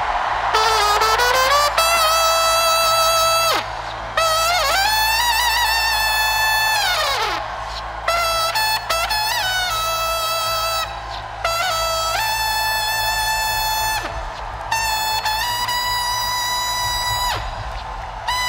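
Trumpet blown in five long held blasts, a few seconds each with short breaks between, some sliding up in pitch at the start and one falling away at the end, sounded as a call of victory.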